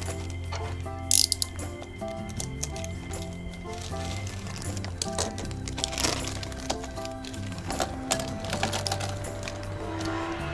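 Background music of steady held notes, with plastic packaging crinkling and plastic kit parts being handled in short clicks and rustles; a sharp crackle of the plastic bag about a second in is the loudest sound.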